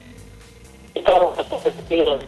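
About a second of faint open-line noise, then a man's voice comes in over a telephone line, thin and choppy, breaking up on a poor phone signal.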